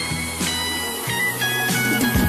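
Music with guitar and a held bass line, playing steadily.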